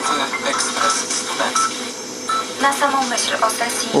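Radio broadcast playing through a Unitra ZRK AT9115 receiver during tuner alignment: a presenter's voice over background music, coming from the receiver's speaker.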